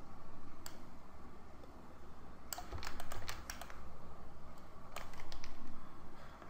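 Computer keyboard and mouse clicks while working in modelling software: a single click early on, then a quick run of clicks between about two and a half and four seconds in and a few more near the end, over a faint low hum.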